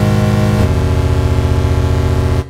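A low, buzzy sustained synthesizer chord from IK Multimedia Syntronik's J-60 instrument (a sampled Roland Juno-60), played on a square-wave-plus-sub-oscillator patch. The chord shifts to new notes about half a second in and is held.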